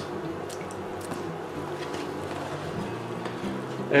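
Donuts dropped one after another into a stainless steel pot of warm water, giving a few soft wet plops over a steady low hum.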